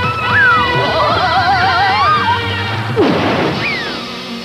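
Cartoon sound effects over jingle music: a short falling whistle, then a wavering warble lasting about a second, and a crash about three seconds in, followed by another falling whistle.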